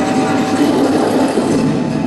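Dance routine soundtrack played loud over a hall PA, at this point a dense, steady rumbling noise with no clear beat, like a sound-effect segment cut into the music mix.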